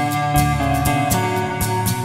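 Electric guitar, Stratocaster style, playing an instrumental lead melody of long held notes over a backing track with bass and a steady drum beat.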